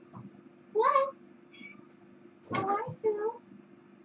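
A cat meowing three times: once about a second in, then twice in quick succession near the end.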